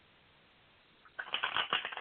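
Tarot cards being shuffled by hand: a rapid flutter of card clicks starting about a second in, after a moment of near silence.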